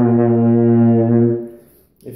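Carl Fischer ballad horn, a flugelhorn-like brass instrument, holding one steady low note that fades out about a second and a half in.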